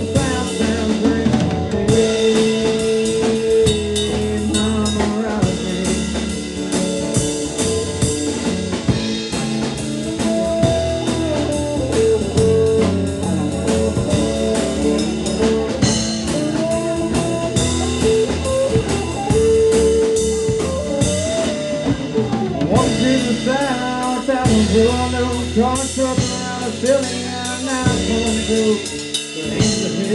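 A live band playing an instrumental passage with no singing: a drum kit keeps a steady beat under long held melody notes, and pitch-bending lead lines come in during the second half.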